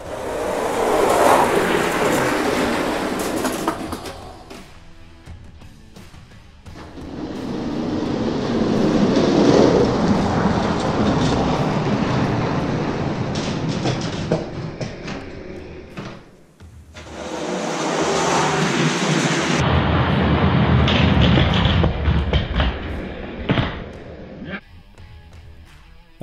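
Small die-cast toy monster trucks rolling fast down an orange plastic Hot Wheels track, their plastic wheels making a rolling rumble that swells and fades three times, over background music.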